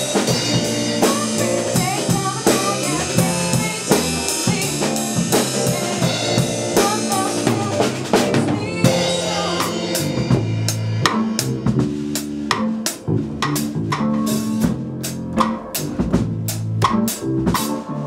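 A rock band rehearsing live: drum kit, electric bass and electric guitar playing together. About halfway through, the dense upper sound thins, leaving the drum strokes and bass more exposed.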